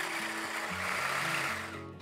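Midea stick blender running steadily as it blends Yorkshire pudding batter, dying away just before the end, with background music underneath.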